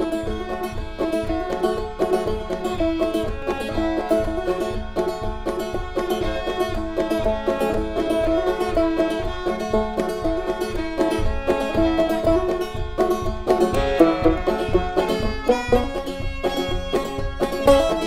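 Instrumental opening of a string-band bluegrass song: banjo picking with other plucked strings over a steady beat.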